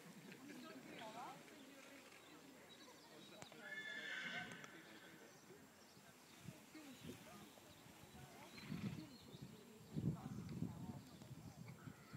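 Faint hoofbeats of a horse cantering on a sand show-jumping arena, growing louder over the last few seconds as it approaches. A brief high-pitched call comes about four seconds in.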